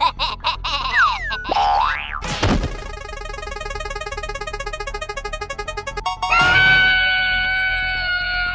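Cartoon sound effects over music: a boing-like pitch glide falling, then one rising, then a spinning prize wheel ticking rapidly and evenly for about three seconds, then a steady held tone in the last two seconds.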